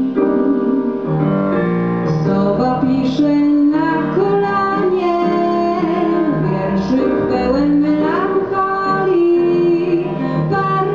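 A woman singing solo into a microphone, slow held notes, over instrumental accompaniment.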